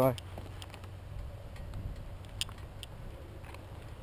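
Faint, steady low rumble of distant engines, like construction vehicles or dirt bikes, with a couple of light clicks about halfway through.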